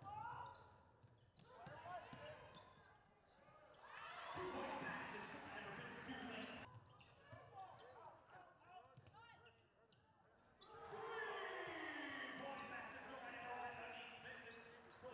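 Faint sound of a basketball game in a gym: a ball bouncing on the hardwood amid voices, in short stretches broken twice by brief silences.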